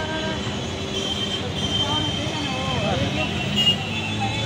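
Busy street traffic, a steady rumble of passing scooters and cars with short horn toots, the clearest near the end, under people talking nearby.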